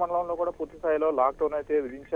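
Continuous speech in Telugu from a news report. The voice sounds thin, with nothing above about 4 kHz, as over a telephone line.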